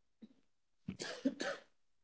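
A person clearing their throat and giving a short cough, lasting under a second from about a second in. There is a faint brief sound just before it.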